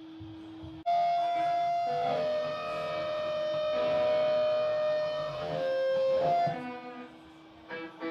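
Electric guitar through an amplifier, coming in sharply about a second in with long held notes that change pitch a few times, then fading out near the end. A steady low tone rings before it starts.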